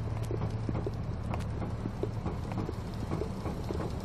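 Footsteps on asphalt, heard as irregular light clicks, over a steady low hum.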